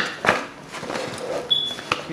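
Cardboard box being handled and opened: flaps rubbing and scraping, with a few sharp knocks as the box is moved, and a brief thin high tone about three-quarters of the way through.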